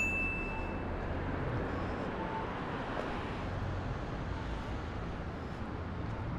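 City street traffic: a steady low rumble of vehicles. A short, high, clear ding sounds right at the start.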